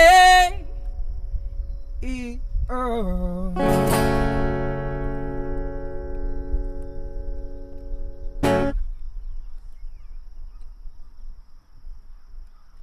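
The end of a song on a steel-string acoustic guitar with a male voice. A held sung note stops in the first half-second and two short sung phrases follow. Then a strummed guitar chord rings out for about five seconds and is stopped by a short sharp stroke about eight and a half seconds in.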